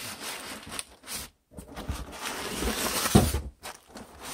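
Clear plastic packaging rustling and crinkling, with cardboard scraping, as a desktop computer is pulled out of its shipping box. A thump near the end.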